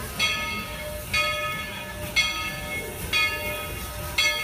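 A locomotive bell ringing steadily, about one stroke a second, over the low rumble of a steam train.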